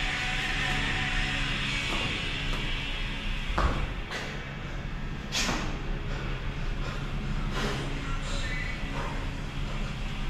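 Background music playing steadily, with a few sharp knocks and clanks of hex dumbbells as they are cleaned and pressed. The loudest knock comes about three and a half seconds in, and a sharper clank comes a couple of seconds later.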